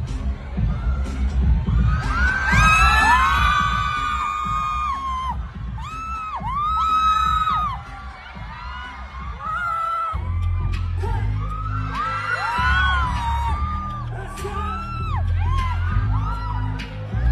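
Live pop music with a heavy bass beat played over a venue sound system, with waves of high-pitched screaming from the audience. The bass pattern changes about ten seconds in as the song moves into a new section.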